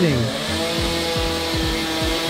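A wood carver's chainsaw running steadily at an even pitch.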